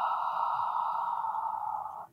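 A woman's long, steady audible exhale, a breathy hiss through the mouth that trails off near the end, on the exhale phase of a Pilates pelvic curl.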